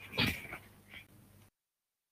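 A brief sound about a quarter second in and a fainter one about a second in, then the audio drops out to dead digital silence.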